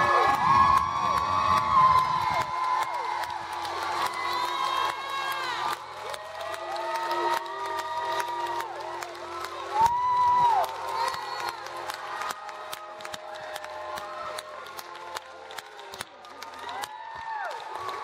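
Audience cheering and whooping, with scattered clapping, as a song ends. The last notes of the accompaniment die away in the first couple of seconds, and the cheering fades toward the end.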